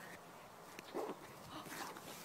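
A cat fighting with another cat gives a faint, short cry about a second in.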